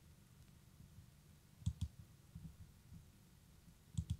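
Computer mouse button clicking: a quick pair of sharp clicks just under two seconds in, and another pair at the very end. The clicks are heard over faint low room rumble.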